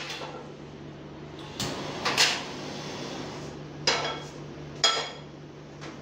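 Metal pans being handled on a stovetop: four separate clanks, the later ones with a brief metallic ring, over a steady low hum.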